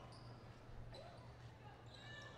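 Near silence between radio play-by-play calls: faint arena background with a low steady hum.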